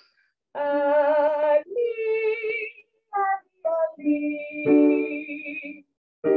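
A woman's voice singing vocal exercises without accompaniment: held notes with vibrato, two short detached notes about three seconds in, then another long held note.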